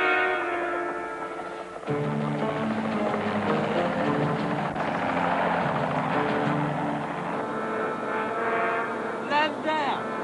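Dramatic music score with sustained chords, with the engine and rotor noise of two low-flying light helicopters building up under it through the middle. A brief voice comes in near the end.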